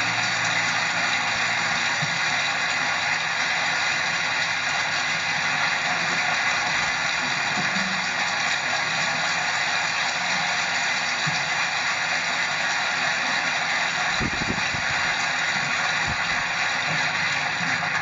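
Strong wind rushing steadily, with a low buffeting rumble on the microphone about fourteen seconds in.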